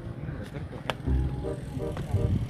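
Faint voices of people talking at a distance over a low rumbling noise, with a single sharp click just before the one-second mark.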